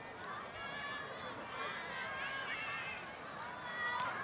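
Several people's voices chattering and calling out over one another, with the footsteps of a group jogging on grass.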